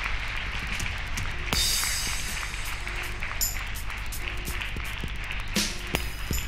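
Music playing with a crowd of people clapping steadily, and a short bright hiss about a second and a half in.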